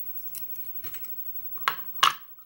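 Small metallic clicks from a brass lock cylinder as its plug is worked out onto a plug follower, a few light ticks with the loudest near the end.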